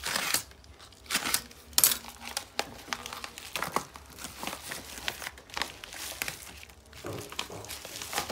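Yellow padded paper mailer envelope being handled and opened, its paper crinkling and rustling in uneven, sudden strokes, the loudest about two seconds in.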